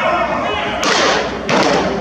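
Thrown baseballs smacking into a leather catcher's mitt: two sharp pops, about a second in and again about half a second later, with voices in the background.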